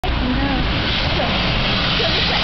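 Jet airliner on its landing approach, its engines making a loud, steady rushing noise.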